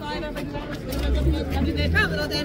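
People talking in a crowd, voices overlapping, with a low rumble through the second half.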